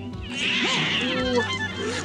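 An animated cat's snarl from a film soundtrack, a loud burst lasting about a second and a half, over background music.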